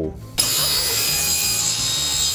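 Table saw ripping a length of pine timber on a slight angle, the blade cutting steadily. It starts suddenly about half a second in.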